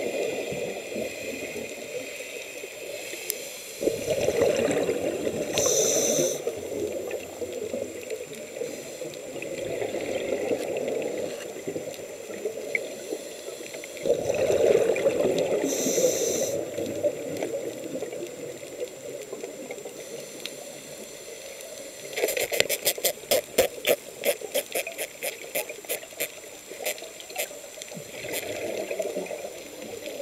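Underwater breathing through a scuba regulator: long bursts of exhaled bubbles about ten seconds apart, each with a short hiss of airflow. Near the end comes a fast run of sharp clicks, several a second, for about six seconds.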